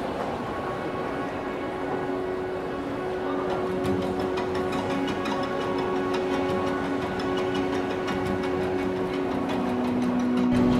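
Wheels of a spinner suitcase rolling across a hard floor, a steady rumble with a fine, regular clicking over it, under soft background music with a held drone note.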